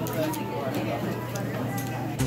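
Indistinct voices and background chatter in a restaurant dining room, with a few faint light clicks.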